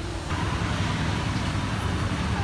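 Steady outdoor street noise with a low traffic rumble.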